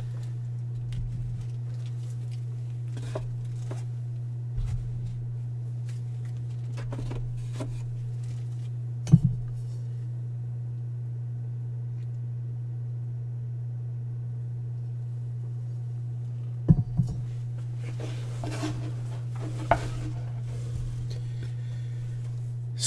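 A steady low electrical hum, with a few light clicks and knocks from trading cards and plastic card holders being handled on the table. The loudest click comes about nine seconds in, with two close together near seventeen seconds.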